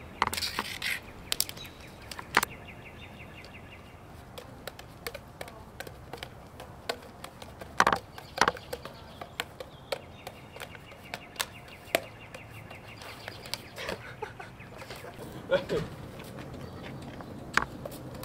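Juggling clubs slapping into hands and knocking against each other: an irregular scatter of sharp clacks.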